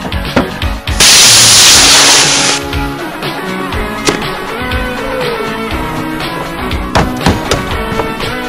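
Fast background music, over which a very loud rushing hiss from the hammer head, which jets smoke, starts about a second in and lasts about a second and a half. Several sharp metal whacks of the hammer striking the car body follow, two close together about seven seconds in.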